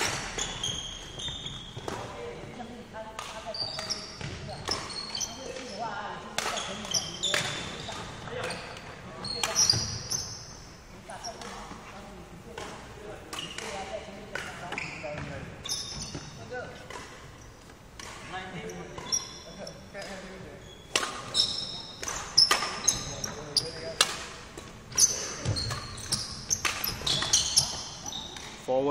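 Badminton rally in an echoing sports hall: irregular sharp racket strikes on the shuttlecock and footfalls, with short high squeaks of court shoes on the wooden floor.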